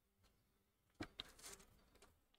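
Faint computer mouse click about a second in, followed by a second smaller click and half a second of scratchy paper rustling.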